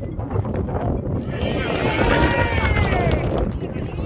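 Football players shouting on the pitch, one loud drawn-out call rising and falling about a second in, over a steady low rumble of wind on the microphone.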